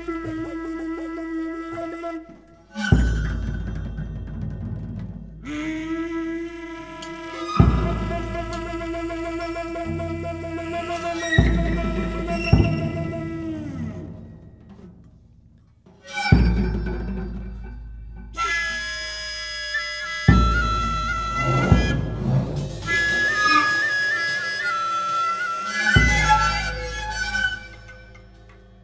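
Duet of Japanese bamboo flute and percussion: about six deep drum strikes a few seconds apart, each ringing on, under sustained pitched tones that waver higher near the end.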